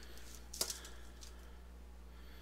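A single light tap about half a second in, as a thin balsa stick is set down on paper plans on a building board, over a steady low hum.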